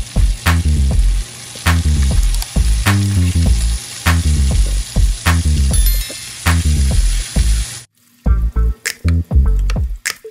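Bacon sizzling in a frying pan under background music with a steady bass beat; the sizzle cuts off abruptly about eight seconds in, leaving the music.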